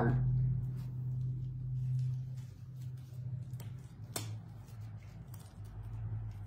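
Faint rubbing and crinkling of fingers stretching and knotting the rubber neck of a balloon, with small clicks throughout and one sharp click about four seconds in, over a steady low hum.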